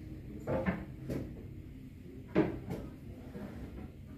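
A few short, light knocks and clatters of porcelain teacups being handled and turned over, the loudest about two and a half seconds in.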